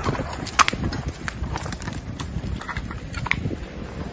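Footsteps on debris-strewn ground: irregular crunches and clicks, with a sharper crack about half a second in.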